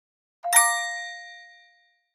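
A single bell-like chime struck once about half a second in, ringing out and fading away over about a second: the sound for the intro logo.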